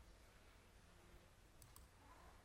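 Near silence: the room tone of a hall, with two faint clicks close together near the end.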